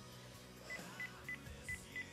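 Mobile phone keypad beeping as a number is dialled: five short, faint beeps of the same pitch, one per key press, starting about three-quarters of a second in.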